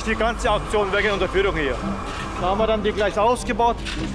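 A man talking, over a steady low background rumble.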